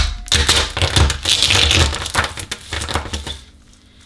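Aluminium drinks can, made brittle by gallium, crunching and cracking apart as a hand presses it flat. A dense run of sharp cracks that thins out and dies away about three and a half seconds in.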